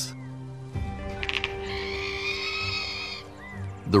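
Background music holding steady low notes. About a second in, a western diamondback rattlesnake's rattle starts with a few quick clicks, then buzzes high and steady for about two seconds.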